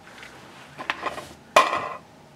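Board game pieces being handled: a soft tap about a second in, then a sharper plastic clack near the end as the game's spinner is picked up off the table.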